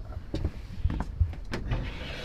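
A few sharp knocks and low thumps, then a large wooden drawer pulled open on metal slide rails.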